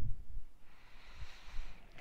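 Low, uneven rumble of wind and handling noise on a phone microphone, strongest at the start, with a faint rustle in the second half as the phone is swung away.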